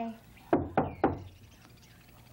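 Three quick knocks on a front door, about a quarter of a second apart.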